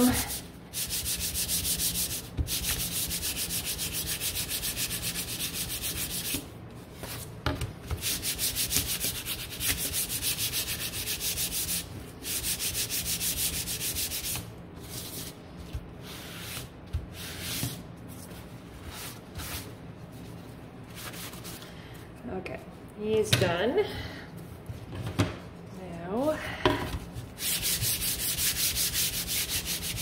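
Hand-sanding stained wood with a sanding pad: fast, even back-and-forth scratchy strokes in runs of a few seconds, broken by short pauses. The pieces are being lightly scuffed, run over very gently.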